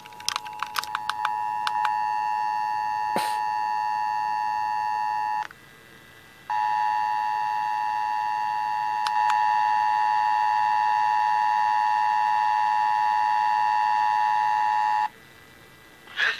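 Emergency Alert System attention signal, the steady two-tone alarm of about 853 and 960 Hz, playing through a La Crosse alert radio's small speaker during a Required Monthly Test. It starts after a few clicks, breaks off for about a second around five seconds in, then sounds again until shortly before the end.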